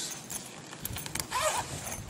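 Zipper on a fabric travel bag being pulled along its track in short strokes, with the bag's fabric rustling as a wheel is packed into its outer compartment.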